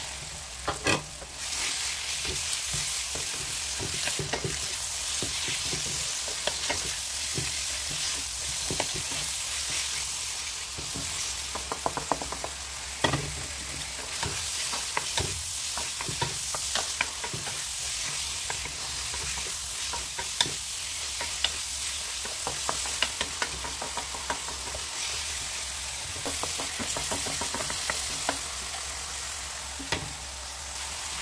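Raw chicken strips sizzling in hot oil in a wok as they are stir-fried with a wooden spatula. The sizzle swells about a second in as the chicken goes in, then holds steady, broken by frequent sharp clicks and scrapes of the spatula on the pan.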